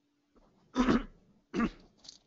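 A person coughing twice in quick succession, short sharp coughs a little under a second apart.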